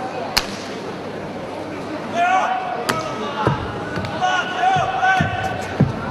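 Stamps and strikes of a baji quan form on a competition carpet: two sharp cracks, then three dull thuds about a second apart in the second half. A high-pitched voice runs over the middle stretch.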